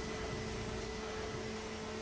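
A steady mechanical hum with an even hiss, from a machine running in the background.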